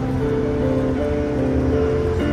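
Piano playing a melody over held chords, with the notes changing every few tenths of a second.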